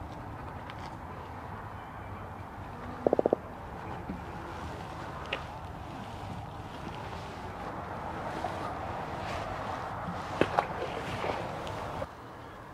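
A just-caught fish croaking as it is handled: one short burst of four quick pulses about three seconds in. Steady background noise of wind and water runs underneath, with a few sharp clicks near the end.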